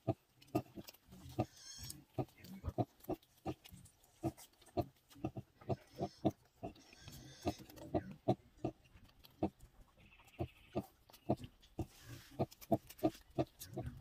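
A nursing sow grunting in short, regular grunts, about two or three a second, while her newborn piglets suckle: the rhythmic grunting a sow gives at feeding. A few brief higher-pitched squeaks from the piglets come in among the grunts.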